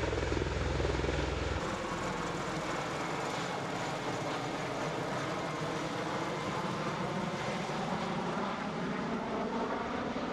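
An MV-22 Osprey tiltrotor flying low overhead, its rotors and turboshaft engines running. A deep rotor beat is strong for about the first second and a half, then the low end drops away suddenly. A steady rushing engine-and-rotor noise continues after that.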